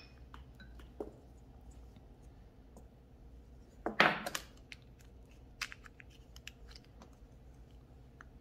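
Small plastic pot of tiny crystal rhinestones and a glue tube being handled on a nail mat: faint scattered clicks, with one louder brief clatter about four seconds in as the pot is set down.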